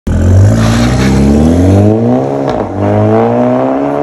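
Skoda Octavia A7 1.8 turbo four-cylinder running through a tuned exhaust (resonator deleted, aftermarket muffler with a vacuum-valve bypass, split dual outlets) as the car accelerates away. The exhaust note climbs steadily, dips briefly with a click about halfway through, then climbs again.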